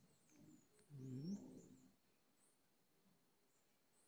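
Faint bird calls: a few short high chirps, with a low cooing call about a second in.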